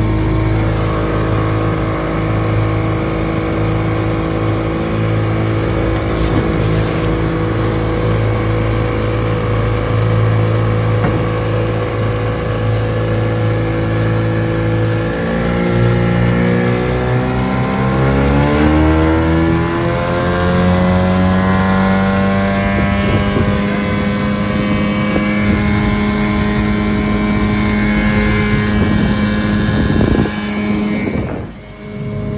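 Outboard motor driving a small aluminium jon boat. It runs steadily, then speeds up over a few seconds about halfway through and holds the higher speed.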